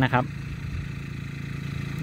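A short spoken phrase, then a steady low rumble like a small engine idling.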